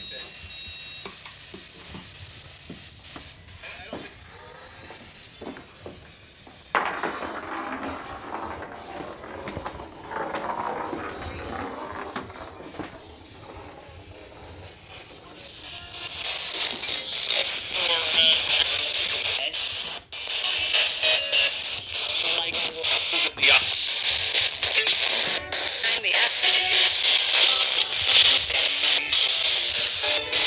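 A radio spirit box sweeping through stations: choppy snatches of music and speech in static. It gets suddenly louder about a quarter of the way in, then louder and hissier from about halfway.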